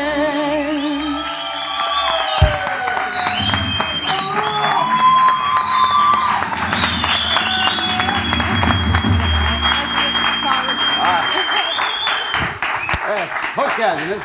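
Studio audience clapping and cheering over the house band's closing music after a song, dying away at the end.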